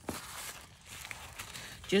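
Thin tissue-paper sewing pattern pieces rustling softly as a hand shifts them on the table.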